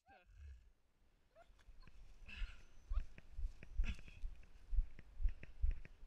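Heavy low thuds, about two a second, from a handler walking through grass with a body-worn camera, following a tracking dog on a lead. A few short whining sounds from the dog come near the start and at about a second and a half.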